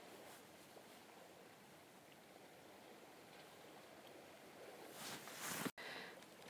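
Near silence: faint, steady outdoor background hiss. Near the end a brief louder rush of noise rises and then cuts off abruptly.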